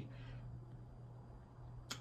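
A quiet pause in the room, with a steady low hum, a faint fading hiss at the start and a short sharp sound just before the end.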